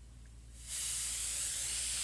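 Iwata Micron airbrush spraying, a steady hiss of air that starts a little over half a second in, with the air pressure turned up.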